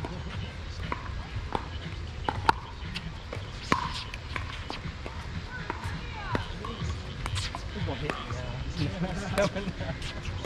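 Pickleball rally: paddles striking the hard plastic ball in sharp pops, roughly one every second or so, over a low steady rumble.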